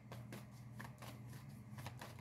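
A deck of tarot cards being shuffled by hand, overhand, the cards sliding and patting against each other in a run of faint, irregular soft taps.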